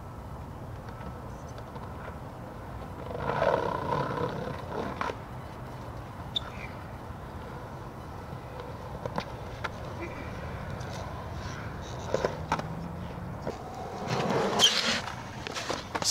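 Skateboard wheels rolling on smooth concrete with a steady low rumble that swells louder twice, broken by a few sharp clacks of the board, the sort of sound a tail strike or landing makes.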